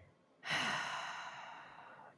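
A woman's long, breathy sigh, starting about half a second in and fading away, as she weighs a hard question.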